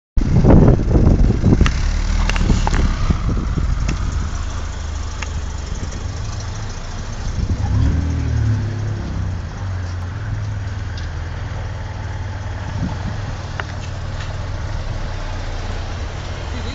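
Opel Rekord Coupé's engine running as the car moves slowly, loudest in the first couple of seconds, with a brief rise and fall in engine pitch about halfway through.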